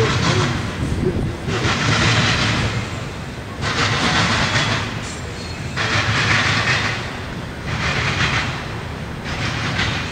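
Intermodal freight train of trailers on flatcars passing close by: steel wheels rumbling and hissing on the rails. The noise swells and dips about every two seconds as the cars go by.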